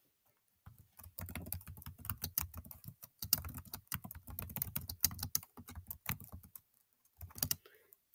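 Typing on a computer keyboard: a fast run of keystrokes that pauses about three-quarters of the way through, then a few more keys near the end.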